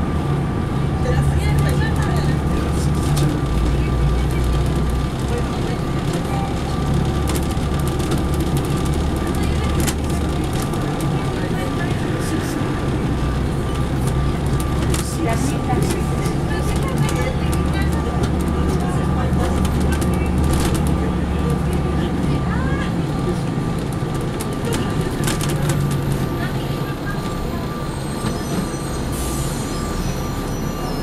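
Cabin sound of a Neoplan USA AN459 articulated transit bus under way: a low diesel engine drone that eases off twice as the bus slows, over road rumble. A steady high-pitched whine runs underneath throughout.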